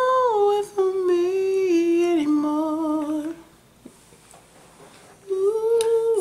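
A person humming a slow tune in long held notes that step down in pitch, for about three seconds; after a short pause another held note starts near the end.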